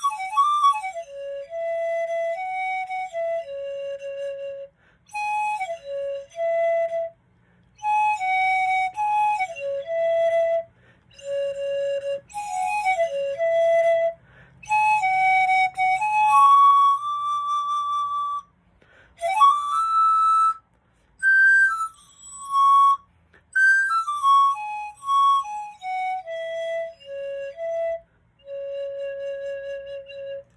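Eight-tube pan flute 3D-printed in Formlabs Draft resin, played as a melody: short phrases of breathy, mostly downward-stepping notes with brief pauses between them. A higher note is held about two-thirds through, and the tune ends on a long low note.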